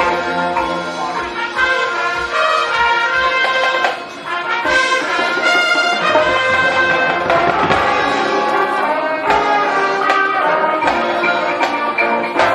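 Marching band playing: brass chords over a steady low drum pulse, with a brief drop in volume about four seconds in and a high ringing note soon after.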